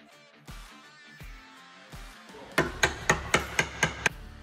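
A small hammer tapping off a hot-glue PDR pulling tab from a car's sheet-metal panel. About eight quick, sharp taps come in a burst starting a little past halfway, several a second.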